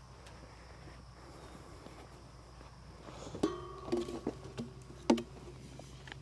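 A cow feeding from a rubber feed bucket. It is quiet at first; then, from about three seconds in, come a series of knocks and scrapes of the bucket with a thin squeak, the loudest knock coming about five seconds in.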